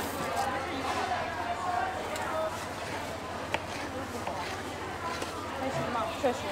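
Indistinct background voices and chatter, with a single sharp click about three and a half seconds in.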